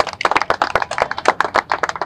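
Applause from a small group of people: many separate hand claps, quick and irregular.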